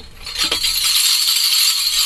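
A small hand-held rattle shaken continuously, a high rattling that starts about half a second in and stays loud and even.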